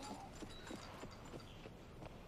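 A faint series of light knocks, irregular and about three a second, like hooves clip-clopping.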